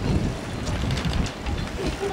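Wind buffeting the microphone, an uneven low rumble.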